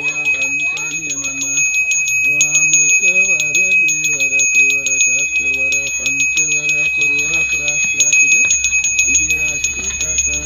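A Balinese priest's hand bell (genta) is rung rapidly and without pause, its clapper strikes running together into one continuous high ringing. A voice chants a slow ceremonial melody in held notes that step up and down.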